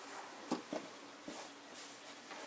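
Faint rustling of a thin seamless tube scarf being handled and smoothed out on a tabletop by hands, with a few soft clicks and knocks about half a second in and again just after a second.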